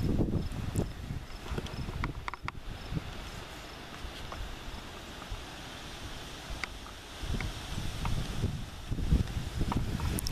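Wind buffeting the microphone in gusts, with grass and leaves rustling. A few small clicks come about two seconds in.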